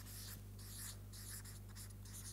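Marker pen writing on flip-chart paper: faint, short scratchy strokes one after another, over a steady low room hum.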